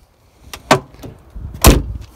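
Car door of a 1975 Toyota Corona Mark II being shut: a sharp click under a second in, then a loud, deep thud near the end as the door closes.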